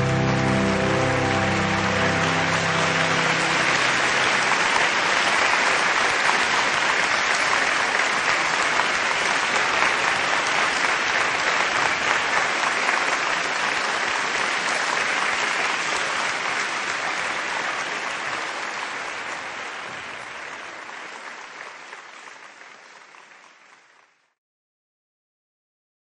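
Audience applauding, steady for most of the time and fading out over the last several seconds. A piece of music tails off beneath it in the first few seconds.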